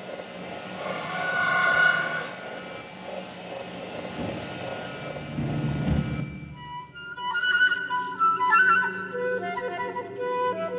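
A breathy, hissing sound texture with faint tones, and a low rumble that swells around the fifth to sixth second. About two-thirds of the way in, a concert flute comes in with clear, short notes in quick melodic figures.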